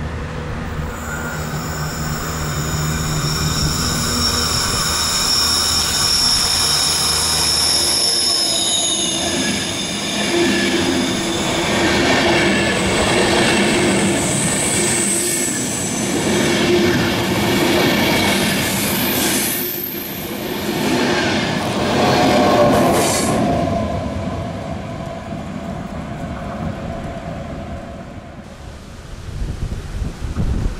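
Locomotive-hauled passenger train rounding a curve close by, its wheels squealing against the rails in several high, shifting tones as the long rake of coaches rolls past, over a dense rumble of wheels on track. The squeal dies away a little after twenty seconds, leaving a quieter rumble.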